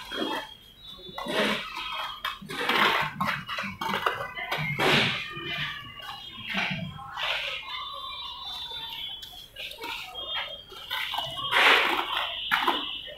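Steel trowel scooping and scraping wet cement mortar and spreading it on brickwork, in short irregular strokes about once a second.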